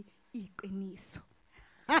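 A woman speaking softly into a microphone, trailing off into a brief pause, with laughter breaking out right at the end.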